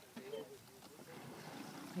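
People talking, with a steady rush of wind on the microphone underneath; a voice speaks up near the end.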